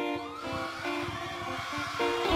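Live band music in a quieter stretch: sustained pitched notes with little bass, and one note gliding upward near the start.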